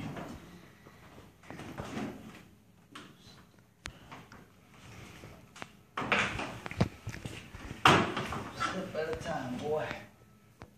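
Knocks, scrapes and clatter of hand work on a heat pump compressor being worked loose in a ceiling. There are scattered knocks at first, then two louder bursts of clatter about six and eight seconds in. Indistinct muttering follows near the end.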